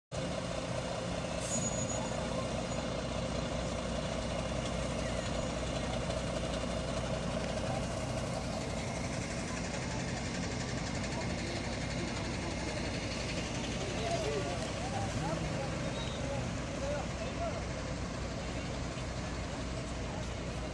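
Heavy sanitation trucks' diesel engines running steadily at low speed as the fleet rolls past, with indistinct voices of onlookers in the background.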